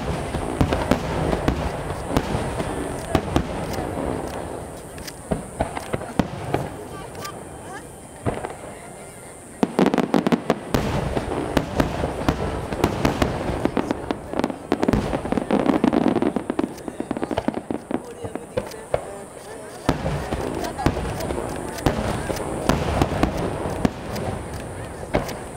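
Aerial firework shells bursting in rapid succession: dense booms and crackling, with heavy new volleys at the start, about ten seconds in and about twenty seconds in.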